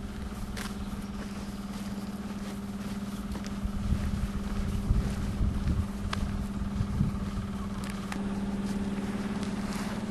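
A steady low mechanical hum, with uneven low rumbling on the microphone from about four to seven seconds in and a few faint clicks.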